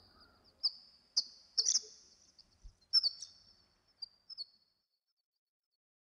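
Horned lark giving short, high chirps, each trailed by a long artificial echo, sparse and irregular, thinning out and stopping about four and a half seconds in.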